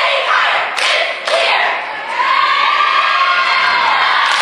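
Cheerleading squad shouting a cheer in unison, ending in a long drawn-out yell in the second half. Two sharp hits cut through about a second in.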